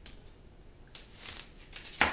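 Boning knife scraping and slicing along a whole fish's thin bones and skin: a soft rasping that starts about a second in, with small clicks, and ends in a sharp knock of the blade on the cutting board.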